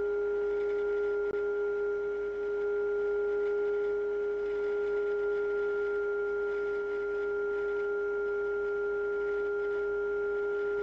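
A steady audio tone of about 400 Hz, with fainter overtones, comes from the Yaesu FT-101 receiver's speaker. It is the radio receiving a signal generator's test signal on 28 MHz during front-end alignment, while the TC15 trimmer is peaked for maximum.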